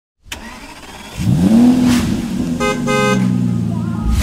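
Cartoon vehicle sound effect: an engine revs up in a rising sweep and keeps running, and a car horn gives two quick beeps a little past halfway.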